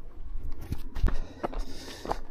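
Handling noise of an action camera being moved into a chest mount: irregular knocks, clicks and rubbing over a low rumble.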